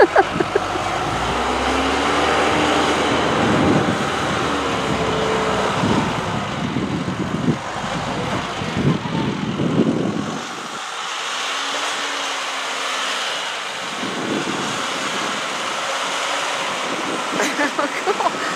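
John Deere backhoe loader's diesel engine running under load as it pushes snow with its front bucket, its note rising and falling.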